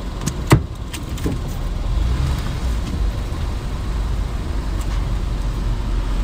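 Car engine and road rumble heard from inside the cabin as the car pulls forward, the low rumble growing a little louder after about two seconds. Two sharp clicks about half a second in.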